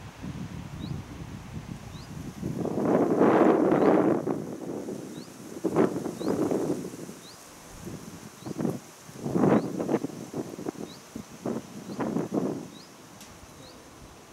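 Wind gusting through the nearby trees, rustling the foliage in several surges, loudest about three to four seconds in. A faint, short, high chirp repeats about once a second.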